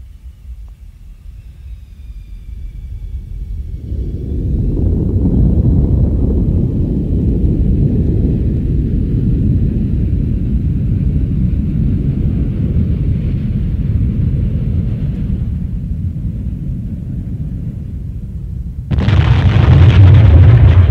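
A deep rumbling noise swells up over the first few seconds and then holds steady, with faint high whistling tones early on: the intro of a 1998 death/thrash metal demo track. About a second before the end the band comes in with full drums.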